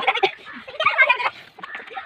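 Children laughing and giggling in quick, choppy bursts.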